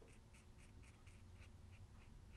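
Faint scratching of a Copic marker's tip on cardstock, a quick run of light strokes about three or four a second, as the edge of a small heart is coloured in.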